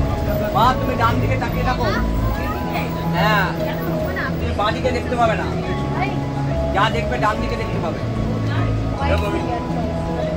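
Bus engine running with a steady low hum in the cabin, under voices and music with held notes.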